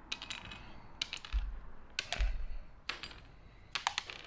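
Small plastic electrical connectors clicking and clattering as they are handled and set down on a workbench: several sharp, light clicks spread through, with a couple of soft bumps on the bench.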